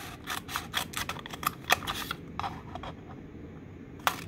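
Scissors snipping up the side of a paper cup: a quick run of sharp snips for about two seconds, then a few more, spaced out and fainter.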